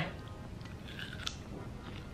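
Faint chewing of a mouthful of raw mini bell pepper stuffed with cream cheese.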